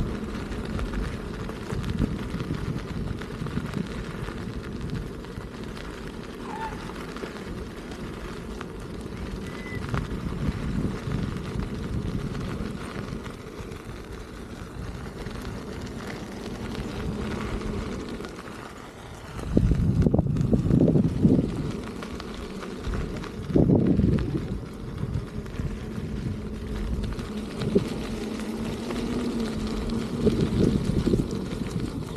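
Wind rushing over the microphone of a camera moving at riding speed: a steady low rumble, with two louder bursts of buffeting, a long one about two-thirds of the way through and a shorter one a few seconds later.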